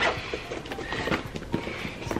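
Small items and pouches being handled in a plastic storage bin: a run of light, irregular clicks and rustling.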